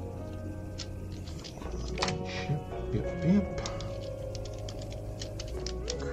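BlueBrixx plastic building bricks clicking and rattling as hands rummage through a bin and snap pieces together, a run of short irregular clicks over steady background music.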